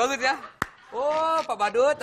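Voices with no clear words, broken by a single sharp click a little over half a second in.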